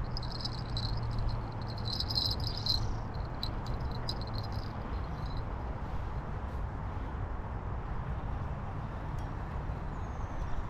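An insect trilling steadily in fast high pulses, over a low outdoor background rumble; the trill fades out about halfway through.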